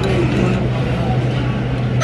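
A steady low hum with faint voices over it.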